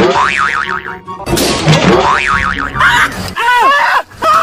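Cartoon 'boing' comedy sound effect, a springy wobbling twang, played twice in a row over background music. Near the end, cartoonish pitched sounds slide up and down.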